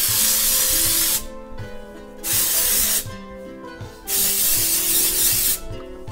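Oribe Après Beach wave and shine spray being sprayed onto hair in three hissing bursts. The first lasts about a second, a shorter one follows about two seconds in, and a longer one comes about four seconds in. Soft background music plays underneath.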